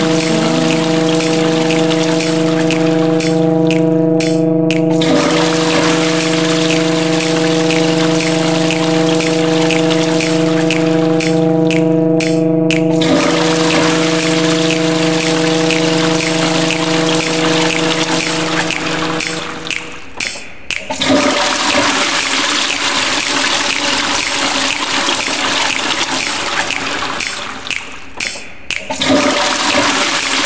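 Electroacoustic collage built on a looped toilet-flush sample: rushing water noise that breaks off briefly about every eight seconds. Under it, a steady held chord of pitched tones stops about two-thirds of the way in.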